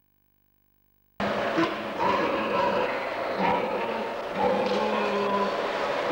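Sound of a pig barn starting suddenly about a second in: a loud, dense din with short grunts and squeals from many pigs scattered through it.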